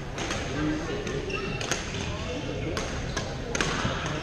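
Badminton rackets striking shuttlecocks in a large, echoing gym: several sharp hits roughly a second apart, with short shoe squeaks and a murmur of players' voices around them.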